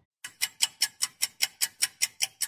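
Clock-ticking sound effect: a fast, even run of sharp ticks, about five a second, starting just after a moment of silence.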